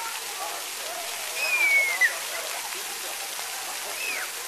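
Steady hiss of water spraying from splash-pad arch sprayers, with children's voices, and one loud high child's squeal that slides down in pitch about a second and a half in.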